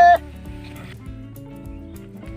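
Quiet background music of steady held notes; a long drawn-out shout cuts off just after the start.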